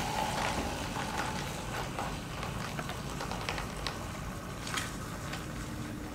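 Drink from an air-pressurised bottle streaming through a solenoid valve into a plastic cup: a steady splashing pour that fades as the stream tapers off, with a few scattered drip ticks.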